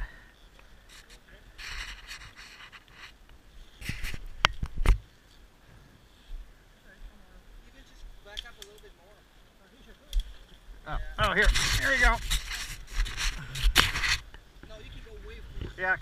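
Boots scuffing and scraping on loose dirt and stones as a heavy BMW GS adventure motorcycle is pushed backward down a trail by hand. There are a few sharp knocks about four seconds in, and a longer, louder stretch of scraping with muffled voices near the end.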